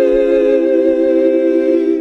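Heavenly, choir-like vocal chord held on one long vowel: the drawn-out middle of the 'sheesh' meme sound effect. It stays steady and starts to fade at the very end.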